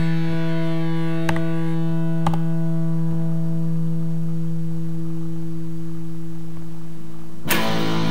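Distorted electric guitar holding one chord and letting it ring on steadily, with a few faint clicks in its first couple of seconds. Near the end comes a sudden harsh burst of noise.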